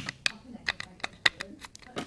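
Irregular light clicks and taps from a mobility scooter's electronic controller being pushed by hand into its housing.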